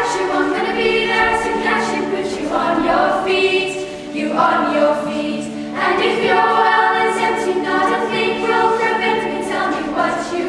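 A school vocal group of mostly girls' voices singing in harmony, in phrases of a second or two, over a steady held low note.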